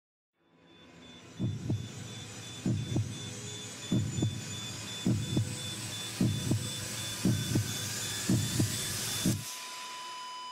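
Heartbeat sound effect: a double beat about once a second, eight beats in all, over a hiss that swells as it goes. It stops abruptly near the end, giving way to a steady ringing tone.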